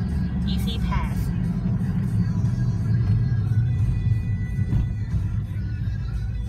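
Steady low road and engine rumble inside a moving car, with music playing over it.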